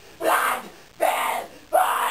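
Death metal vocalist's harsh screamed vocals: three short shouted bursts of about half a second each, in quick rhythm, with no backing music audible.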